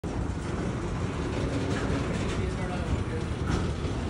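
Freight train's autorack cars rolling slowly along the rails: a steady low rumble of wheels on track.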